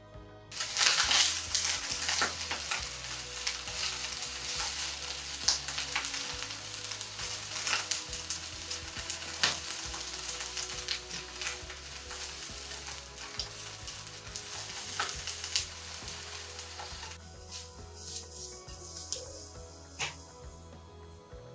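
Eggplant halves frying in vegetable oil in a frying pan: a loud sizzle full of crackles and spits starts suddenly about half a second in and drops away abruptly near the end.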